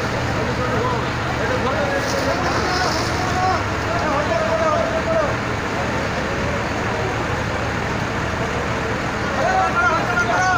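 Indistinct voices talking over a steady rumble of engines and traffic.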